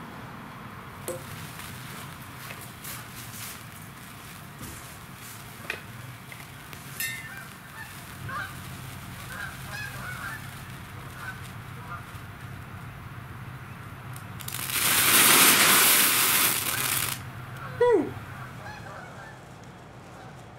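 Potassium chlorate and magnesium granule mix under a propane torch, giving scattered small crackles as it throws sparks, then flaring up about 14 seconds in with a loud rushing hiss that lasts nearly three seconds. Just after it dies, a short honk-like call falls in pitch.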